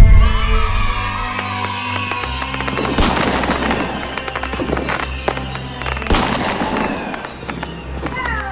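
Fireworks sound effect: a loud bang followed by dense crackling and falling whistles, with two more sharp bangs about three seconds apart, over background music.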